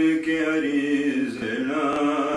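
Male voice chanting a noha, a Shia Muharram lament in Urdu, in long held notes that glide up and down in pitch.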